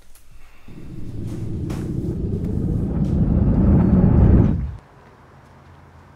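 A car's engine rumbling, growing louder for about four seconds and then cutting off abruptly.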